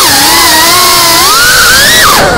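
FPV quadcopter's electric motors and propellers whining, recorded by the onboard camera. The pitch dips right at the start, then climbs steadily through the second half as the throttle comes up.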